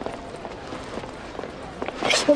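Quick running footsteps over a faint background murmur of voices, with a few sharper steps near the end.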